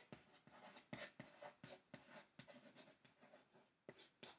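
Chalk writing a word on a small chalkboard: a faint run of quick, irregular scratches and taps, several a second.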